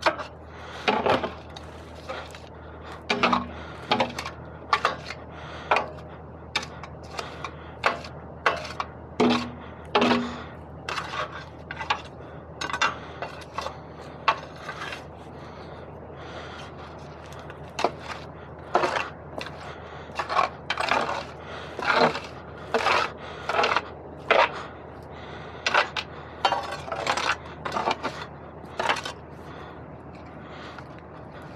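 A steel pry bar jabbing and scraping packed mud off a steel skid: metal knocking on metal and clods breaking away in irregular strikes, about one a second, with a lull of a few seconds midway. A steady low hum runs underneath.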